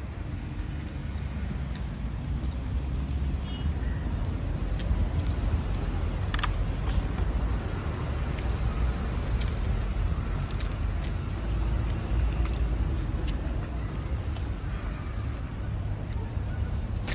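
Steady low outdoor rumble of road traffic, with a few faint clicks and taps.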